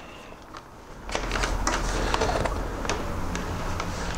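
A cable being pulled through under a motorcycle's plastic tank cowling: rustling and scraping with many small plastic clicks and knocks, starting about a second in.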